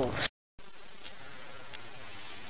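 The end of a spoken word, cut off by a brief dropout at an edit. After it comes a steady low hiss of room tone, with no distinct sound events.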